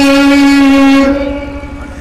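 A man's voice holding one long, steady sung note in a chanted sermon, amplified through a microphone and loudspeakers; the note ends about a second in and fades away.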